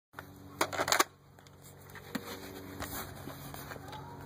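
A homemade Nerf blaster, the Mini-pede, firing a foam dart through a chronograph: two sharp clacks in quick succession about half a second in, then a few faint clicks.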